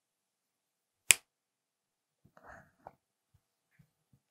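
A single sharp plastic click about a second in, then a brief rustle and a softer click, from the hands handling a blue SC fiber-optic splice-on connector.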